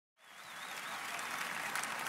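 Applause from a large audience, fading in shortly after the start and then continuing steadily.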